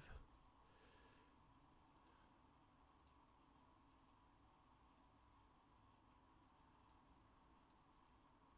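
Near silence: room tone with a faint steady hum and a few faint clicks, about one a second.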